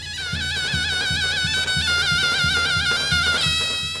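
Traditional folk music: a high reed wind instrument plays a wavering, ornamented melody over a steady drum beat of roughly two to three strokes a second.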